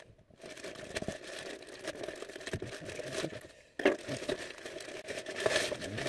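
White plastic poly mailer bag being cut and torn open by hand, the plastic crinkling and rustling throughout, with a sudden louder tear a little before four seconds in.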